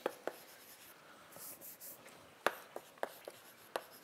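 Chalk writing on a blackboard: a string of irregular sharp taps as the chalk strikes the board, with a brief high scratchy stretch about a second and a half in.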